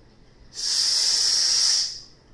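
A loud, steady hiss lasting about a second and a half. It starts half a second in and cuts off sharply near the end.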